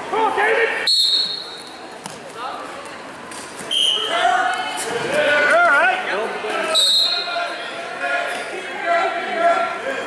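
Men shouting over a wrestling bout in a large gym with an echo, and a sharp knock on the mat about a second in.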